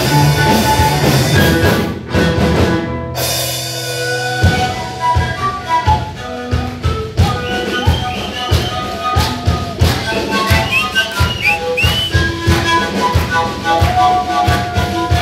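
Live band playing: drum kit and electric guitar full on, breaking off about two seconds in. After a held low note the drums come back in with a steady beat under a melody with bending notes on small wind instruments held to the mouth.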